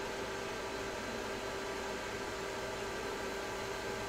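Steady background hiss with a faint, even hum; no distinct events.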